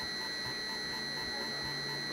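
Steady electrical whine and low hum with nothing else happening: the constant background noise of a cheap webcam recording.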